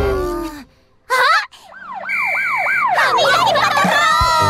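A cartoon police-car siren sound effect wailing quickly up and down about five times, after a short loud hit, with a steady high tone over part of it. Bright children's music starts near the end.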